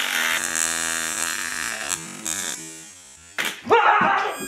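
Homemade taser buzzing as it is fired across a mustache, a steady electrical buzz with a hiss over it, fading out after about two and a half seconds. Near the end comes a short sharp burst of noise, then a voice.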